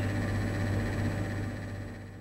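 Steady low hum with an even background hiss, room tone indoors, fading out near the end.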